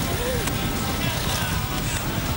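Engines of a large pack of motorcycles riding together, a dense, steady mass of engine noise.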